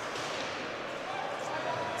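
Ice rink ambience during live play: a steady background hiss of the arena, with faint crowd chatter.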